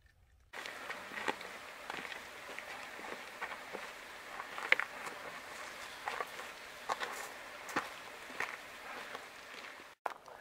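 Footsteps on stony, gravelly desert ground, short irregular steps over a steady hiss, starting about half a second in.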